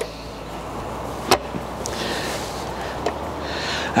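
Lamb sizzling on the hot grill grate inside the closed ceramic kamado dome: a steady hiss, with one sharp metallic click a little over a second in.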